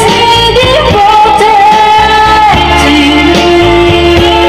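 Videoke song playing loud: singing over a steady backing track, with one long held note from about a second in until past halfway.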